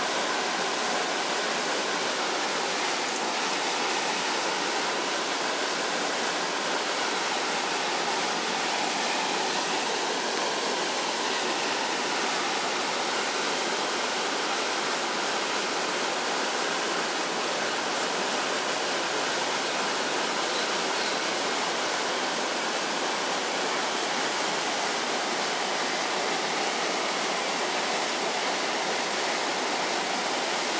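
Steady rushing of water pouring through the openings under a canal bridge, a constant hiss with no pauses or changes in level.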